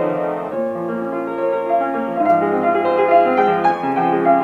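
Kawai RX-2 grand piano being played, several notes ringing together in chords under a melody. The piano is out of tune, having come in untuned from its previous owner.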